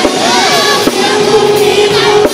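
Live pop-rock band performance over a PA: a male singer's voice over the band and drums, with a long held note through the second half.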